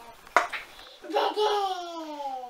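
A single sharp clink of a metal spoon against the plate while pasta is served. About a second later a young child's voice rises in one long call that slides slowly down in pitch.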